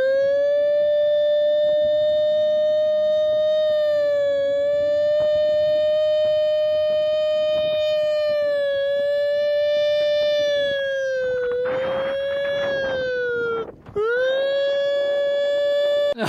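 A man imitating a siren with his voice: one long held wail with a slight waver, its pitch sagging shortly before a brief break about 14 seconds in, then rising again into another held note.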